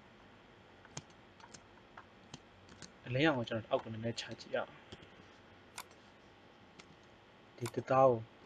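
Sparse, irregular single clicks of a computer mouse and keyboard as shortcuts are pressed, with a short stretch of talking about three to four and a half seconds in and a brief bit of voice at the very end.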